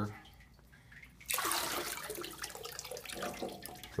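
Water pouring and splashing in a Gold Cube sluice's recirculating tank, starting suddenly about a second in and slowly tapering off.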